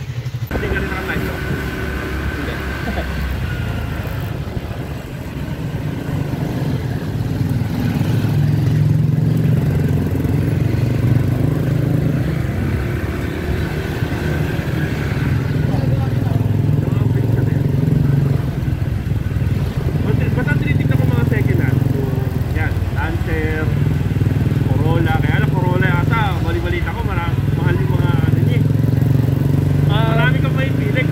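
Honda PCX scooter being ridden along a street: a steady low drone of engine and road noise, with voices talking over it in the second half.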